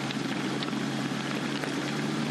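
Minibus rolling over a crushed-stone road: steady tyre noise on the loose stone with a low, steady engine hum beneath it and an occasional click of a stone.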